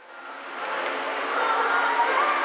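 Children's choir singing in a school hall, faint at first and growing louder over the first second and a half.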